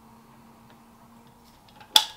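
Faint steady hum in a quiet room, then one sharp click near the end as the flip lid of a stainless-steel water bottle is snapped shut.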